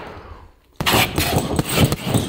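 Boxing gloves hitting a heavy punching bag in a fast combination of punches that starts suddenly a little under a second in.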